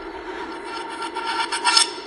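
Electronic logo-sting sound effect: a grainy, rasping shimmer over faint held tones that swells to a peak near the end, then begins to fade.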